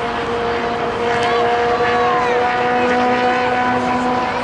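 A steady motor drone holding one pitch, with faint shouts over it.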